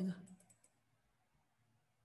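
A short run of computer mouse clicks in the first second, the clicks of a folder being opened in a file dialog. The rest is quiet room tone.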